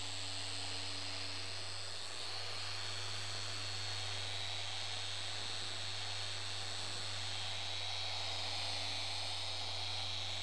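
Electric dual-action polisher running steadily on a car's painted hood. It gives a constant high-pitched whine over a low hum, with no change in speed.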